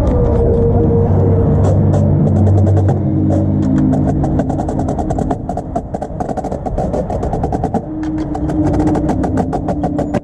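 Indoor percussion ensemble music: low sustained chords, with a fast run of drum strokes coming in about two seconds in and carrying on throughout.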